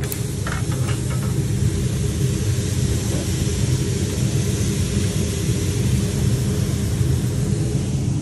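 Steady commercial-kitchen noise at a flat-top griddle: a low running rumble with a hiss of food sizzling on the hot steel, and a few short clicks of metal spatulas on the griddle about half a second in.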